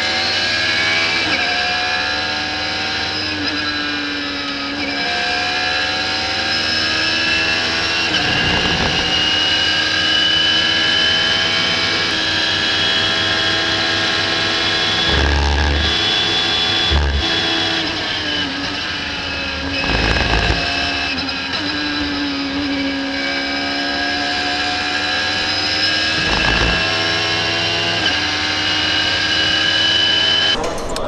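Radical SR3's motorcycle-derived four-cylinder engine at racing speed, heard onboard, its note climbing through the gears with a sudden drop at each upshift and falling away under braking. A few dull thumps break in around the middle and again near the end.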